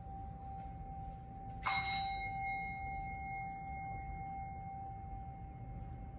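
A meditation bell struck once a little under two seconds in, its clear tone ringing on and fading slowly, over a tone already ringing from an earlier strike. A single ring is the agreed signal that the meditation has started.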